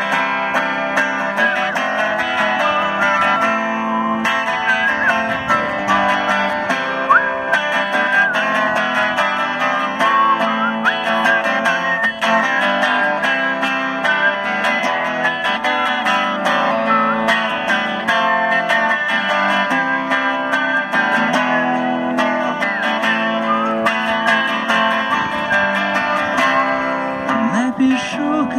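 Electric guitar played without singing: an instrumental stretch of a song, with changing chords and short bent notes at a steady level.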